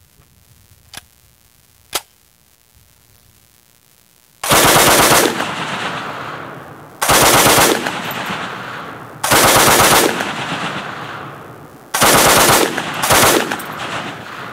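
French Hotchkiss M1914 machine gun in 8mm Lebel firing five short bursts, each dying away in a long echo, the last two close together. Two sharp clicks come a few seconds before the first burst.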